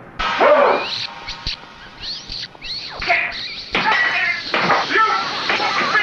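Film soundtrack: a man's shouting and high, sliding squeaks over strange music, with a few short knocks.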